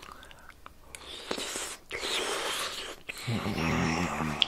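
Close-miked chewing of a mouthful of soft spätzle in gravy: wet, crackly mouth noises for about two seconds, starting about a second in.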